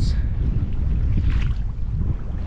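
Wind buffeting the microphone aboard a sailing yacht under way in about 13 knots of breeze: a steady, fluttering low rumble.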